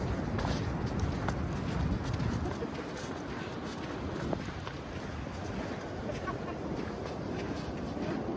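Steady wind and surf noise on an open beach, heard mostly as a low rumble on the microphone.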